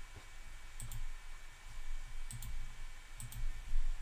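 A computer mouse being clicked at a desk: three quick double clicks spread across the few seconds, with dull low knocks on the desk under them and a heavier thump near the end.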